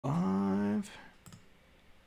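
A man's voice holding a low, steady 'uhh' for under a second, followed by a few faint computer clicks.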